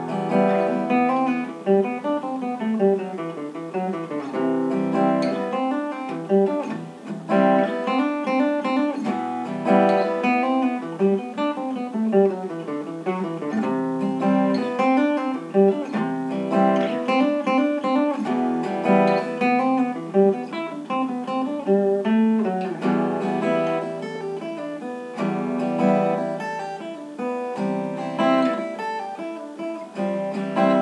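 Steel-string acoustic guitar played solo, an instrumental passage of chords and picked notes without singing.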